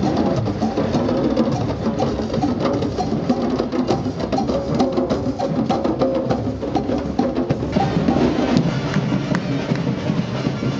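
A group of djembe hand drums played together in a dense, steady rhythm of hand strikes.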